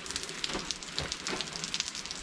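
A thin flow of water trickling and splashing over rocks, a steady crackling hiss full of fine ticks: a waterfall running almost dry.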